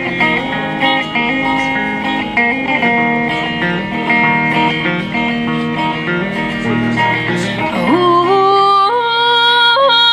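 A live song: a woman plays chords on an amplified electric guitar, and near the end her singing voice comes in, sliding up onto a held note.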